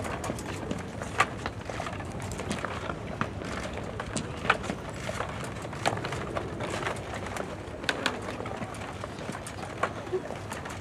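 Footsteps of a group of costumed stormtroopers walking down stone steps: irregular sharp clicks and knocks of hard boots on stone, over steady background noise.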